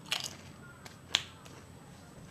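Someone chewing a tortilla chip with the mouth: a few crisp crunches and mouth clicks, the sharpest a little past a second in.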